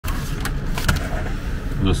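A folding pocket knife being handled: two light clicks over a steady low hum, and a man's voice begins right at the end.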